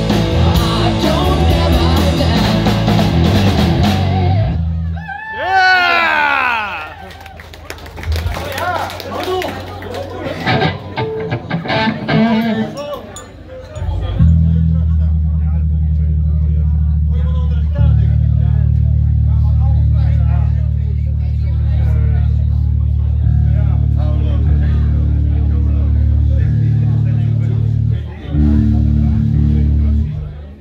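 A live rock band plays the last seconds of a song with drums and electric guitars, stopping about five seconds in, followed by a few swooping guitar notes. After a quieter gap, long, steady low notes ring from the bass rig through the amplifiers, changing pitch a few times, while the band readies for the next song.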